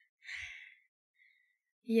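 A short, breathy exhale from a person close to the microphone, about half a second in, followed by a quiet pause.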